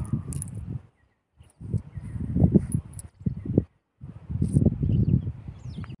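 Hands scooping and sifting beach sand, with wind buffeting the microphone, in short spells broken by two abrupt cuts to silence about a second in and just before four seconds.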